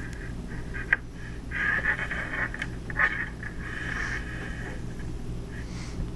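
Close handling noise of thin wires being worked into a clear plastic RJ45 plug: scratchy rustling with a couple of small clicks, about one and three seconds in, over a steady low hum.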